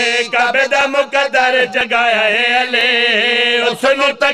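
A man's voice chanting devotional verse in a melodic, drawn-out style into a microphone: short broken phrases, then one long wavering held note in the second half.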